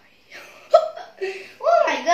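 A boy's wordless vocal sounds: a series of short voiced cries, one sharp and sudden about three-quarters of a second in, and a cry whose pitch swoops up and down near the end.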